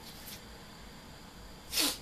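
Quiet room tone, then near the end one short, sharp breath sound from a person, lasting a fraction of a second.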